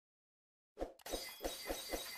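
Sound effect of a subscribe-button animation: silence, then just under a second in a glassy, shattering sound starts, with a quick series of about five even pulses.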